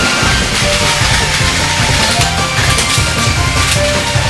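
Loud, steady rock background music in a heavy, driving style with a regular beat.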